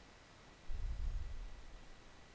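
Quiet room tone, with a brief low rumble on the headset microphone from a little under a second in.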